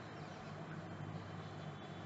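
Faint steady hiss with a low hum: microphone room tone.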